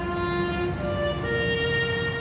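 Background music: a slow solo bowed-string melody, violin-like, in long held notes. The pitch steps up briefly about three-quarters of a second in, then settles on a new held note a little after a second.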